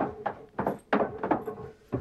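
Footsteps coming down an open-tread wooden staircase: about five firm footfalls on the wooden treads, a third to half a second apart.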